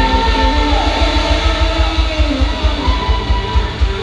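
Live rock band playing, with electric guitar and a fast, steady kick-drum beat. A long held note falls away about a second in.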